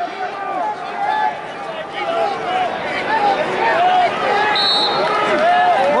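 Many voices shouting over one another: wrestling spectators and coaches yelling encouragement, a loud unbroken crowd of voices. A brief high tone cuts through about three-quarters of the way in.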